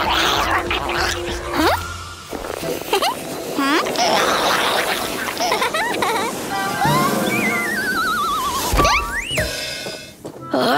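Cartoon music with comic sound effects: short swooping whistles, a long wavering whistle sliding down in pitch about seven seconds in, then a quick rising swoop.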